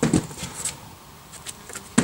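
Thuds and scuffs of a boulderer dynoing on a sandstone boulder: a heavy thump just at the start and another at the end, with lighter slaps and scrapes of hands and shoes in between.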